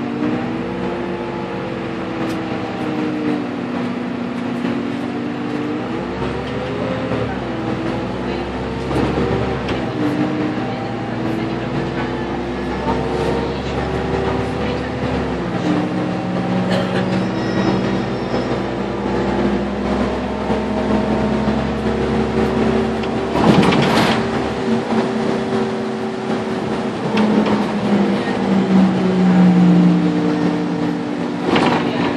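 Karosa B951E city bus heard from inside the cabin while driving, its engine and drivetrain rising and falling in pitch as the bus speeds up and slows. There is one loud knock about three-quarters of the way through.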